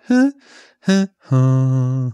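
A man's voice humming or singing a short wordless phrase: two brief notes, then a longer held low note. It sketches a possible closing button for a song arrangement.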